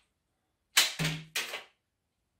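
Rubber band of a 3D printed paper plane launcher being released, firing the plane off with a sharp snap about three quarters of a second in, followed by two quieter strokes in the next half second. The plane comes off the launcher cleanly rather than sticking.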